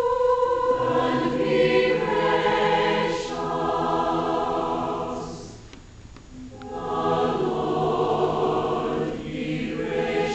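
A mixed choir of men and women singing sustained chords in two long phrases, with a short breath between them about six seconds in.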